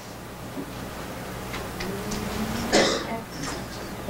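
Classroom room tone: a steady low hum with a few faint small clicks, and one short cough-like sound from a person in the room near the end.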